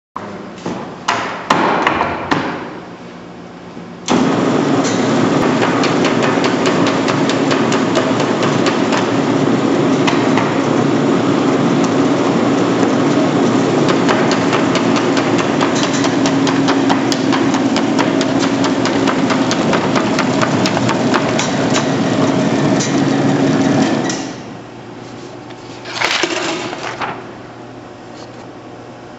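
Rosback Model 220 perforating, slitting and scoring machine switching on about four seconds in and running steadily with a hum and dense rapid ticking, then winding down about twenty seconds later. A few clatters of paper being handled come before it starts, and a short burst of paper handling near the end.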